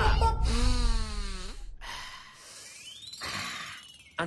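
A man's long, drawn-out yell over a low thud, then a hissing, crashing comic sound effect with a rising whistle-like glide.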